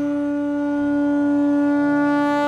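One long, steady blown note on a horn-like wind instrument, held at a single pitch.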